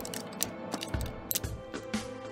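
Background music playing under several small, sharp clicks of hard plastic toy parts as a tabbed accessory is pressed into the side of an action figure's head.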